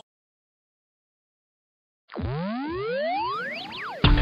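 Dead silence for about two seconds, then an edited-in cartoon sound effect: several overlapping tones sweeping steeply upward in pitch, a stretched, rising boing lasting about two seconds.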